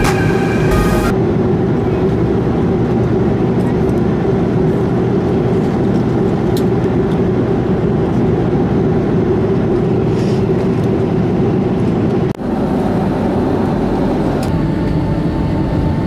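Steady drone of an airliner cabin in flight: engine and airflow noise, unbroken apart from a short gap about twelve seconds in.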